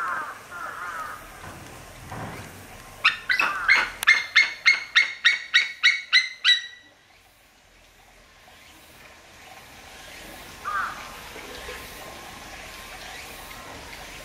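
White-tailed eagle calling: a run of about a dozen sharp, evenly spaced calls, some three a second, lasting about three and a half seconds, with a single short call at the start and another near the end.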